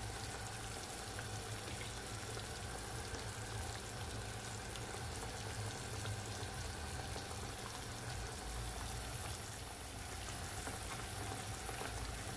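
Chicken thighs simmering in a honey jerk sauce in a frying pan, giving a steady, even bubbling and sizzle.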